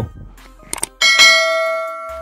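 Subscribe-button animation sound effect: two quick mouse clicks just under a second in, then a bright bell ding at about one second that rings on and slowly fades.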